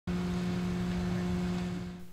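Mobile crane's engine running steadily while it holds a lift, a constant even hum over outdoor noise, dropping away slightly near the end.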